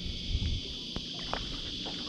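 Steady high-pitched insect drone from the bush, with a low wind rumble on the microphone and a few light knocks from handling on the boat.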